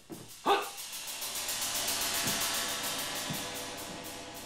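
A tense background music cue from the drama's score. It opens with a short, sharp swooping hit about half a second in, then goes on as a rapid, even high-pitched pulse that slowly fades.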